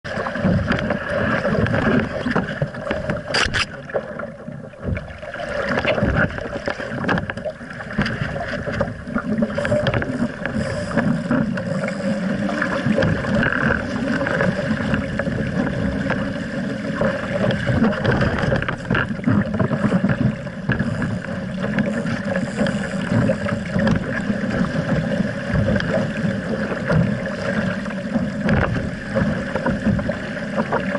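Water rushing and splashing along the hull of an RS Aero sailing dinghy under way, with wind buffeting the deck-mounted microphone. One sharp knock sounds a few seconds in.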